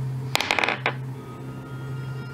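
Dice rattling and clattering briefly on a tabletop about half a second in, a rolled ability check, over quiet background music.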